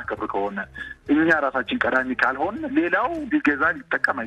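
Speech only: a person talking on an FM radio programme.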